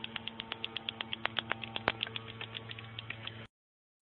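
Steady low electrical-type hum with a rapid, even train of faint clicks, about eight a second, stopping abruptly near the end.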